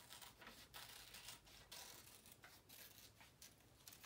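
Scissors cutting through paper: a run of faint, irregular snips as circles are cut from a sheet.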